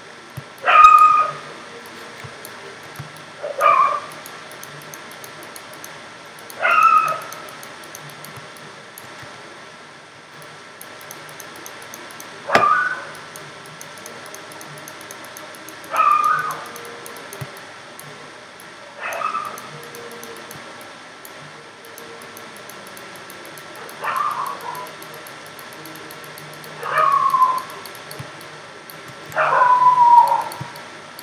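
A dog's short high cries, nine of them in all, coming about three seconds apart in groups of three, each falling in pitch.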